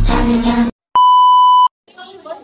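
Upbeat dance music cuts off abruptly. After a brief silence, a single loud, steady electronic beep sounds for under a second.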